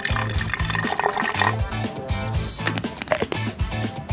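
Water pouring into a plastic paw-cleaner cup to fill it, under background music with a steady, repeating bass line.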